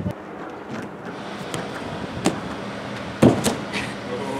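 Slaps and thuds of a gymnast's round-off back tuck on an inflatable air track. There is a sharp slap a little after two seconds, then the loudest thump, the landing on a crash mat, just after three seconds.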